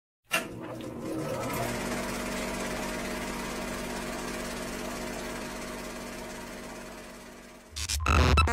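Film projector sound effect: a click as it starts, then a steady rapid mechanical clatter with a low hum, slowly fading out. Near the end a sudden louder swell begins.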